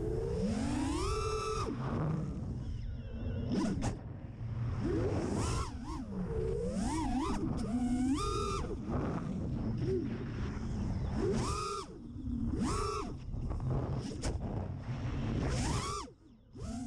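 A 5-inch FPV racing quadcopter's brushless motors and three-blade props whining as it flies, the pitch sweeping up and down again and again as the throttle is punched and cut, with a few brief drops where the throttle comes off. It is heard from the camera mounted on the quad.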